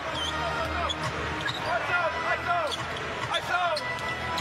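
A basketball being dribbled on a hardwood court, with sneakers squeaking as players cut and drive, over steady arena crowd noise.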